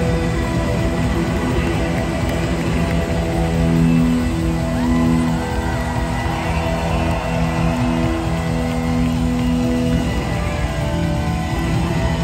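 Loud live blues-rock band with electric guitars and drums, long notes held over the band for several seconds.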